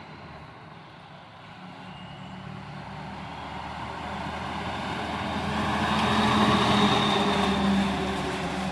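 Flatbed tow truck carrying a car drives up and passes close by, its engine hum and road noise growing steadily louder to a peak about six to seven seconds in, then easing slightly as it goes by.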